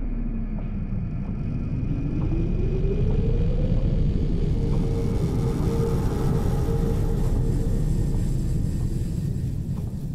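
A dense low rumble with one tone that dips, then climbs and holds steady, fading near the end as the track closes.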